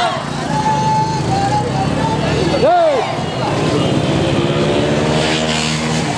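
Motorcycle engine running at walking pace, its low hum steady and its note climbing gently over the last couple of seconds, with people calling and one sharp shout just before the middle.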